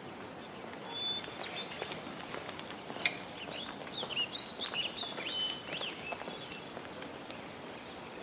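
Small birds chirping and twittering over a steady background hiss, with quick, sliding high calls that come thickest in the middle. A single sharp click about three seconds in is the loudest moment.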